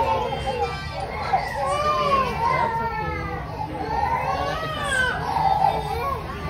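High-pitched children's voices with a toddler crying and fussing, mixed with chatter.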